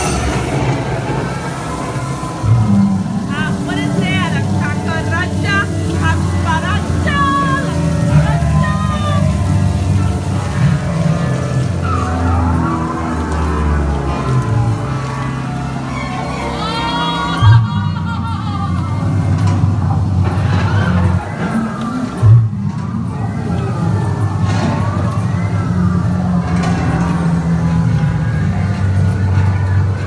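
Dark-ride show soundtrack: music with monster character voices over a steady low rumble, and two sudden loud hits, one about halfway through and another about five seconds later.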